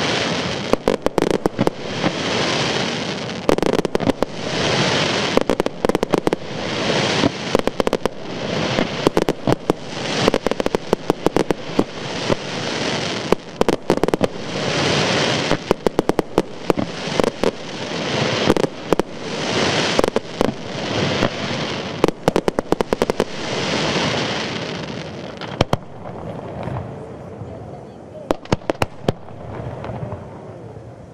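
Fireworks display: a dense, continuous run of sharp bangs and crackles over swelling waves of noise every couple of seconds. It thins out and grows quieter over the last few seconds.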